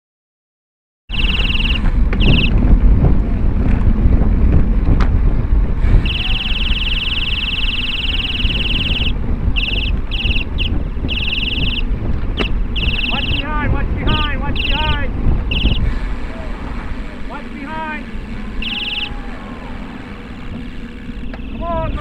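Wind buffeting the microphone of a bicycle-mounted camera while riding, starting about a second in, with a shrill high tone sounding in repeated blasts, some several seconds long. Voices call out several times in the second half.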